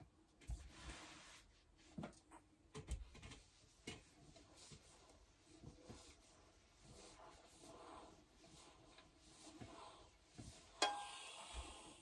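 Quiet rustling and sliding of paper and fabric under a household iron as a cross-stitch piece is pressed on a cloth-covered table, with a few soft knocks. Near the end comes one sharp clack, the iron being stood back up on its heel.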